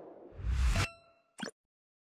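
Designed logo-sting sound effect: a whoosh swells into a low hit, which ends in a bright ringing ding that fades out, followed by one short pop.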